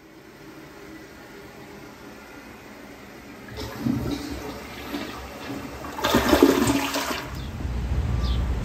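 Toilet flushing: water rushing into the bowl, growing louder about halfway through and loudest near the end before stopping abruptly.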